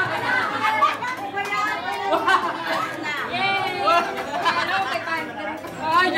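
Several people talking at once in overlapping chatter.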